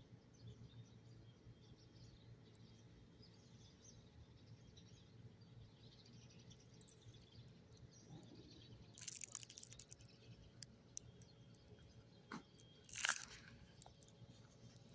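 Near silence with a faint outdoor background, broken by a few short crackling crunches: a cluster about nine seconds in, a single click a little later, and the loudest crunch near the end.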